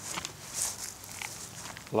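Footsteps swishing through dry grass, several soft uneven steps; a man's voice starts just at the end.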